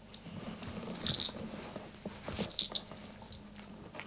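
Small metal bell on a dog's collar jingling as the dog moves its head: two short, bright jingles about a second and a half apart, and a fainter one near the end, over soft rustling.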